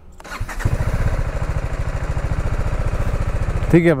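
TVS Apache RR 310's single-cylinder engine starting about half a second in, then idling steadily with an even pulse.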